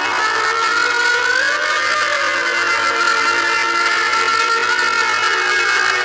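Film background music: a slow melody of long held notes, with a gentle pitch bend about a second and a half in.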